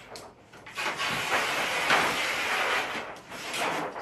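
Brown kraft paper being pulled off a roll: a rustling paper noise that starts just under a second in and lasts about two and a half seconds.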